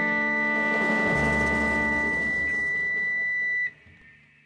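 A jazz ensemble holds a sustained chord, with a high held note on top and bass notes underneath. The band cuts off together about three and a half seconds in, leaving a brief fading ring, as at the close of a piece.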